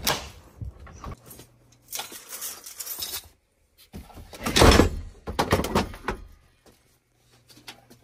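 Lever door handle turning and its latch clicking, then knocks and rattling as cordless power tools are lifted out of a shelf. The loudest knock comes about halfway through.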